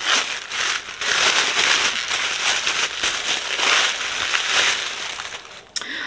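Pink wrapping crinkling steadily as hands unwrap an eyeshadow palette, dying away near the end.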